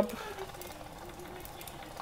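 Faint running of a motor-driven rotary distribution switch, with light irregular ticking as its wiper steps over the contacts.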